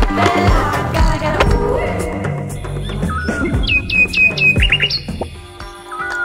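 Background music, then about three seconds in a quick run of high, sharp bird chirps, several in rapid succession, over a thinner musical bed, as of small birds squabbling.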